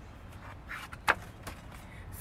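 Pages of a picture book being handled and turned, with one sharp snap of paper about a second in, over a steady low background rumble.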